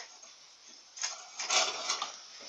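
Steel pipe arm of a homemade exercise machine shifting in its welded metal wall bracket, metal scraping on metal: a short scrape about a second in, then a louder, longer one.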